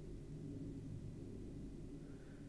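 Faint steady low hum of room tone, with no other sound.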